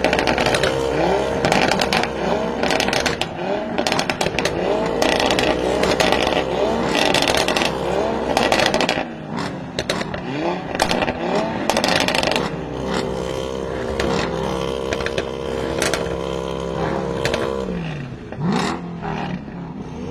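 Performance-car exhausts from an Audi RS3 five-cylinder and a Mercedes-AMG E63 S twin-turbo V8, being blipped again and again, the engine note rising and falling about once a second with crackles and pops. About two-thirds of the way in, a revved engine is held at a steadier note for a few seconds, then the blips return.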